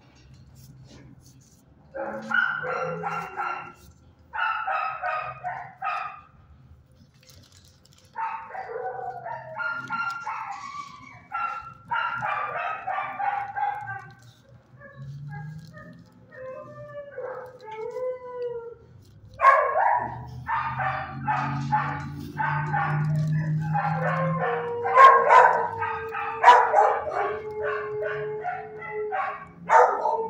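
Shelter dogs barking and howling in repeated bouts, with a few whining, gliding calls in a lull about halfway through, then a dense stretch of continuous barking over the last ten seconds.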